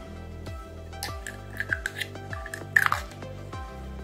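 Background music with a steady beat, with a few short clicks and rustles about one to three seconds in from hands handling a plastic pen-style TDS meter.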